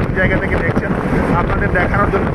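Steady low rumble of wind buffeting the microphone and road noise from a moving vehicle, with snatches of a voice talking over it.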